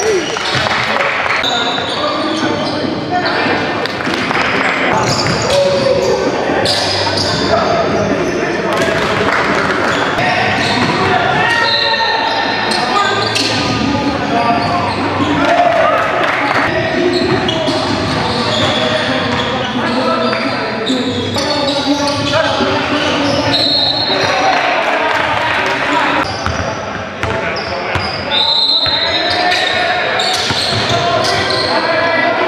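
A basketball game in a large gym: the ball bouncing on the hardwood floor, with scattered players' voices calling out. Everything echoes in the hall.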